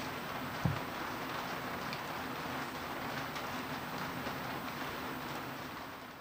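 Steady, even machine noise with a faint low hum, like a running fan or motor, fading slightly near the end. A single low thump comes about a second in.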